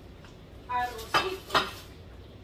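Kitchen dishes and utensils clinking as they are handled and set down on the counter: a short ringing clink, then two sharper clinks close together in the second half.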